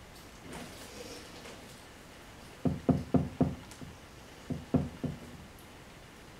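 Faint rustling of plastic leaves, then dull knocks as an artificial plant is fitted inside a glass vivarium: a quick run of four, then three more about a second later.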